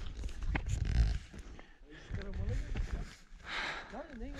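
Wind buffeting the camera's microphone in irregular low rumbling gusts, strongest about a second in.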